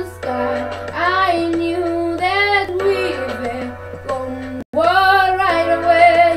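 A boy singing a slow pop ballad melody in long held phrases whose notes bend and swell, over a steady low hum. The sound cuts out for an instant about three-quarters of the way through.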